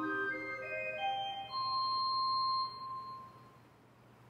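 C. B. Fisk pipe organ playing a quiet line of single notes that ends on a held high note about a second and a half in, which then dies away in the church's reverberation, leaving near silence by the end.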